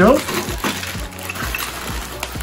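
A clear plastic bag crinkling as it is handled, with the small metal router attachments and spanner inside clinking against each other.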